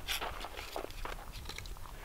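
Faint scattered light ticks and rustles of movement and handling, over a low steady rumble.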